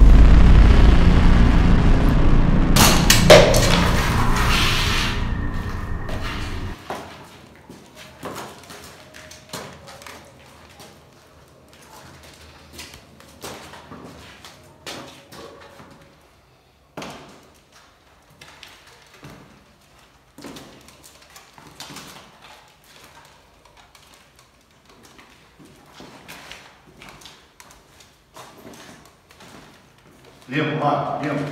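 Staged gunfire and explosion sound starting suddenly and loud, its deep rumble dying away over about seven seconds, with a sharp bang about three seconds in. Faint, scattered cracks and knocks follow.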